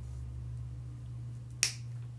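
A single sharp snip about one and a half seconds in: jewelry cutters cutting the hanging loop off the top of a small metal charm.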